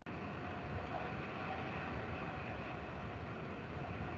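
Steady low background noise, an even rumble and hiss with a faint steady hum, with no distinct events.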